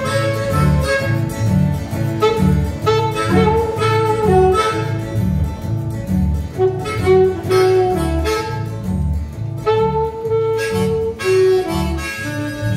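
A small acoustic band plays live: harmonica cupped to a microphone and a saxophone carry held melody notes over a plucked double bass walking in a steady beat and a strummed acoustic guitar.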